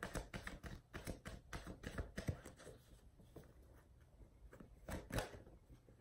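A deck of oracle cards being shuffled by hand: a quick run of soft card flicks and slaps for the first two and a half seconds, then sparser ones, with a couple of louder slaps about five seconds in.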